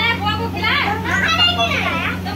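Children's voices chattering and calling out over one another, with a steady low hum underneath.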